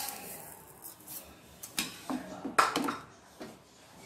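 Wooden spatula stirring sugar into milk in a metal saucepan, with irregular scrapes and light knocks of the spatula against the pan. The loudest knocks come a little past halfway.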